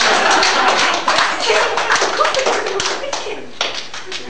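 Audience applause, dense at first and thinning out to scattered claps over a few seconds, with voices underneath.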